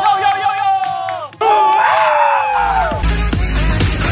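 K-pop stage performance at a break in the beat: the bass drops out while two long held high notes ring, each sliding down at its end. Audience shouting and cheering comes in around the second note, and the heavy bass returns about two and a half seconds in.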